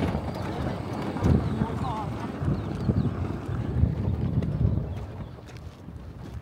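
Wind buffeting the microphone in low, uneven rumbling gusts, easing off near the end.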